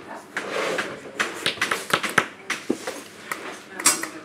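Indistinct low talk in a small room, with scattered short clicks and knocks of things being handled.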